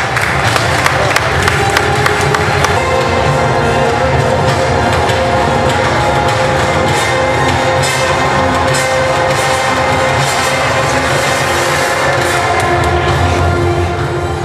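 Loud music playing continuously, with a crowd cheering over it.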